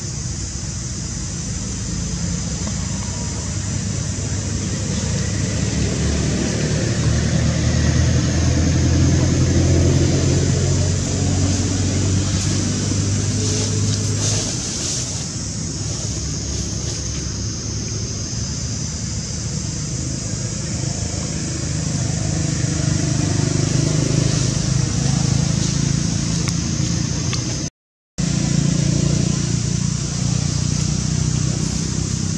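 A low engine hum, steady in pitch and swelling and easing in level, loudest about a third of the way in, with a steady high hiss above it; the sound cuts out for an instant near the end.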